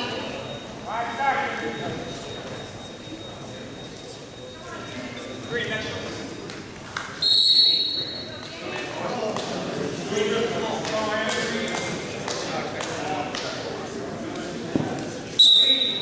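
A referee's whistle gives a loud, steady blast of about a second a little past the middle, and a shorter blast near the end that starts the next wrestling bout. Voices of people in the gym run throughout.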